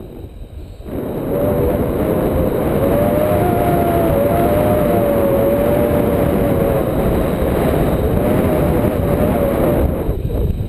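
Wind rushing over the pole-mounted camera's microphone in paraglider flight, quieter for the first second and then loud and steady, with a thin wavering whistle-like tone running through it.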